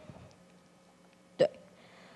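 A pause in speech: low room tone, broken about one and a half seconds in by one short, sharp catch of breath from the speaker.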